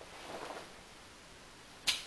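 A 40-ounce bottle being chugged: faint gulps about half a second in, then a single sharp click near the end.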